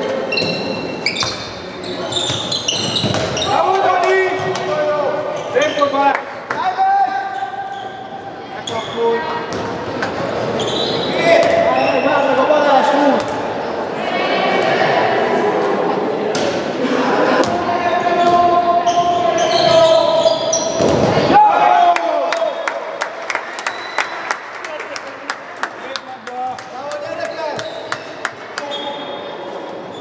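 A handball bouncing repeatedly on a wooden sports-hall floor, with sharp impacts most frequent in the last third. Players' shouts echo in the large hall.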